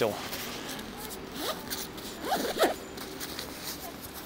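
A bag's zipper being pulled open in short scratchy strokes, with the bag rustling as it is handled.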